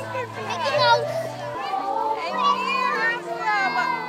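A group of children's voices chattering and calling over one another, high-pitched and overlapping, with a low bass line of background music underneath.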